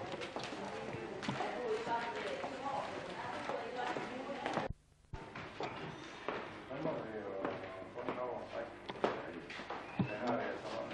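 Indistinct chatter of several people talking at once in a large room, with a few light knocks. The sound cuts out briefly about five seconds in.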